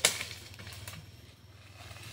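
A single sharp knock right at the start, over a faint, steady low hum.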